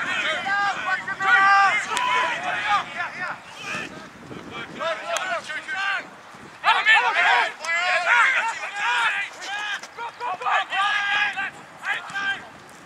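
Raised voices shouting and calling in bursts across a football ground, too indistinct to make out words, with some wind noise on the microphone.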